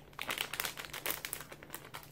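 Plastic candy wrapper crinkling in the fingers as it is handled, a run of quick crackles.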